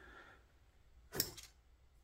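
A brief scrape of the folding knife's milled titanium pocket clip and the knife rubbing against the pocket fabric as it is drawn out, a little over a second in.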